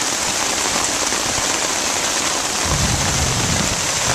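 Heavy rain hitting a tarp overhead, a steady dense hiss. About three seconds in, a low rumble joins it.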